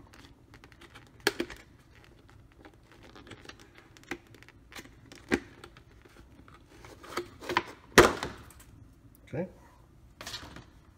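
Thin plastic packaging crinkling and crackling in irregular bursts as a tablet is worked out of its clear plastic sleeve, the loudest crackle about eight seconds in.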